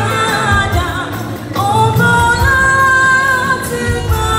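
A large church choir singing, holding long notes; the singing dips briefly about a second and a half in, then a new long note rises and holds.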